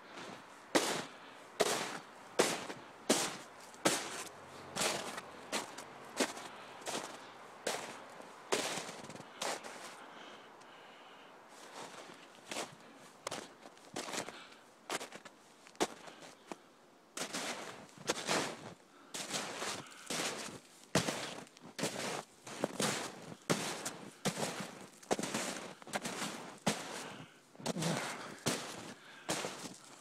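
Footsteps crunching through about two and a half feet of snow, hard walking: a steady run of steps, about one and a half to two a second, with a brief pause about a third of the way in.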